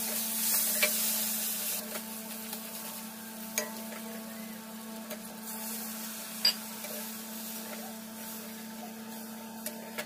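Water added to hot oil and fried spice paste in a kadhai sizzles, loudest in the first couple of seconds and then settling to a softer sizzle. A metal spatula taps against the pan a few times as the mixture is stirred.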